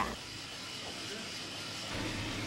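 Drum coffee roaster running with a steady, even hiss while it turns green coffee beans early in the roast.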